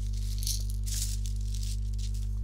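Dried black beans rattling briefly inside a glass jar as it is moved, a soft shake about half a second in and another about a second in, over a steady low electrical hum.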